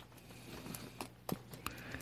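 Several faint, sharp clicks, irregularly spaced, over a low steady hum and hiss.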